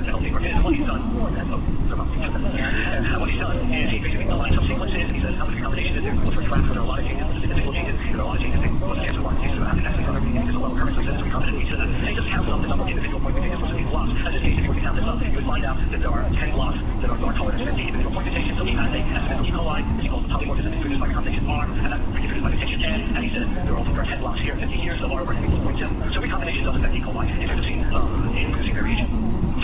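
Steady, dense low rumbling noise with indistinct voices under it.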